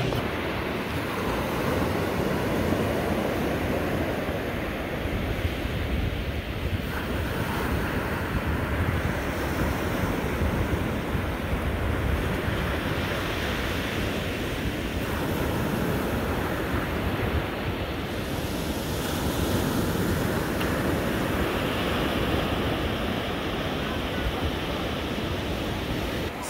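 Ocean surf breaking and washing onto the shore in a steady, continuous rush, with wind buffeting the microphone.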